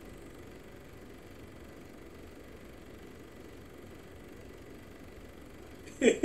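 Faint, steady background hiss of room tone, with no music or speech.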